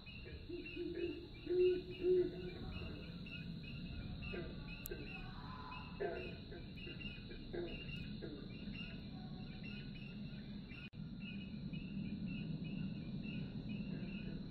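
Nature soundscape of chirping insects: a regular chirp about three times a second over a constant high-pitched insect drone. Two short low calls stand out near the start.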